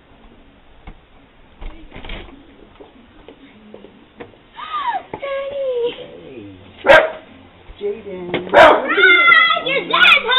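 Repeated high-pitched whining cries that rise and fall in pitch, starting about four and a half seconds in and growing louder and more frequent near the end. Two sharp knocks, the loudest sounds, fall in between, about seven and eight and a half seconds in.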